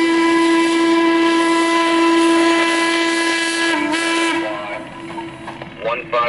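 Whistle of Western Maryland 1309, a 2-6-6-2 Mallet steam locomotive: one long, steady single-note blast that breaks off about four and a half seconds in, leaving quieter sounds of the running train. A new blast starts right at the end.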